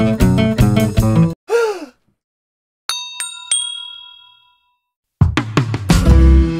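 Guitar background music stops, followed by a short downward-gliding swoosh and then a cluster of bright chime dings about three seconds in that ring out and fade: an edited transition sound effect. The guitar music comes back in near the end.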